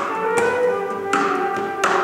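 Flute and acoustic guitar duo playing: the flute holds long melody notes while the guitar is struck sharply, three percussive knocks or strums on the guitar about 0.7 s apart.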